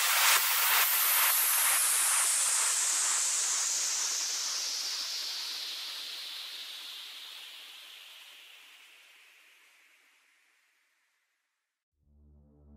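White-noise sweep at the end of an electronic dance track: a hiss that slides steadily down in pitch and fades away to nothing over about ten seconds.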